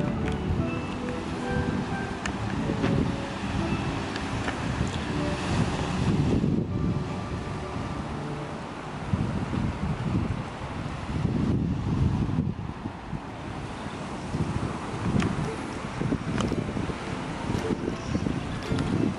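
Wind buffeting the camera microphone in uneven gusts, over the wash of surf.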